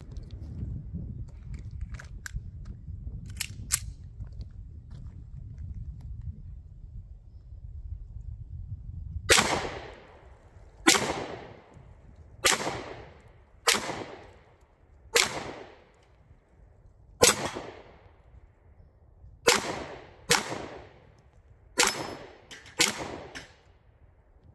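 A Ruger Max-9 9mm pistol firing a slow string of about ten shots, one to two seconds apart, starting about nine seconds in. Each shot is a sharp crack with a short echo. Before the shooting there is only a low rumble and a few faint clicks.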